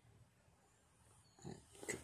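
Near silence: room tone, with one brief faint sound about one and a half seconds in.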